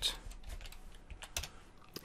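Computer keyboard typing: a few scattered, quiet keystrokes as code is entered.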